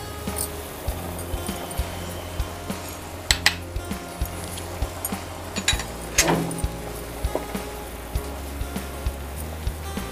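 Background music with steady sustained notes over water at a rolling boil in a cooking pan, bubbling with scattered little pops and clicks.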